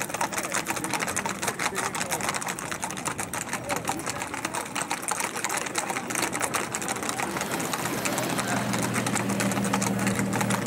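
Hooves of several shod gaited horses clattering on a paved road in a fast, dense patter. About eight seconds in, a low steady hum of a car engine joins them as a vehicle draws alongside.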